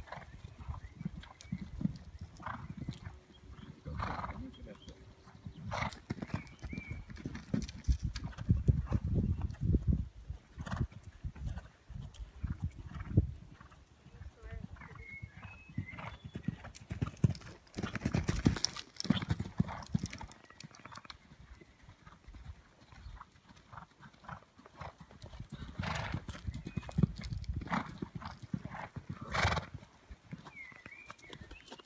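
Horses' hooves thudding on a sand arena as horses canter around the school, the dull hoofbeats swelling in runs as a horse passes close and fading as it moves away.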